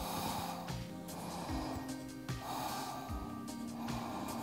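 Soft background music with steady sustained tones, over a person's audible slow breathing, a few breaths in and out.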